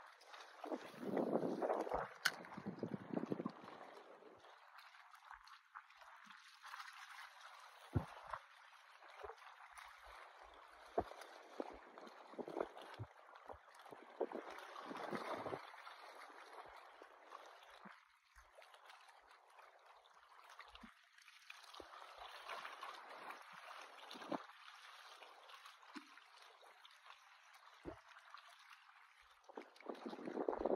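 Small waves lapping and gurgling against the rocks at the water's edge, rising and falling irregularly, with the loudest swell between about one and three seconds in.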